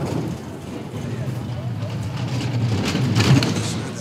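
Bobsled running down the ice track: a low rumble of its steel runners on the ice, building as it approaches and loudest about three seconds in, echoing off the track walls.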